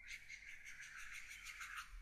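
Faint scratching of a stylus on a drawing tablet in quick back-and-forth strokes, about six a second, as a wavy line is drawn.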